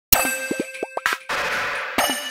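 Opening of an electronic track: a sharp hit followed by four quick synth bloops that drop steeply in pitch, a short burst of noise and a sustained noisy wash. The two-second figure repeats as a loop.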